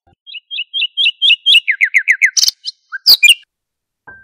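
Bird song: a run of quick, high repeated chirps that speeds up into a string of falling notes, then a few louder, harsher calls near the end.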